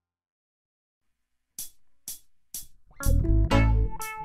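Silence between tracks, then four short clicks about half a second apart counting in, and a reggae song starting with bass and guitar about three seconds in.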